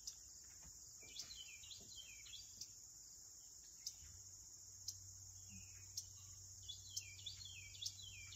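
Faint morning ambience: a steady high-pitched insect chorus, with a bird's short falling chirps in two bouts, about a second in and again near the end.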